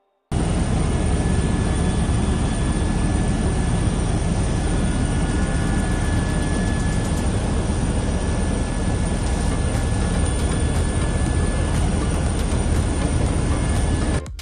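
Helicopter cabin noise inside the cockpit in flight: a loud, steady din of rotor and engine. It starts suddenly about a third of a second in.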